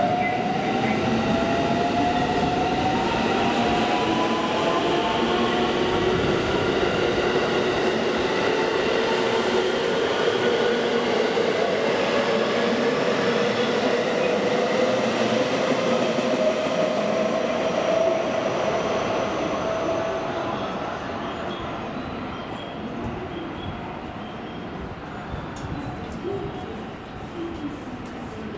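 JR West electric commuter train pulling out alongside the platform: its motor whine climbs slowly in pitch as it gathers speed, over running noise from the wheels. The sound fades away over the last several seconds as the train leaves.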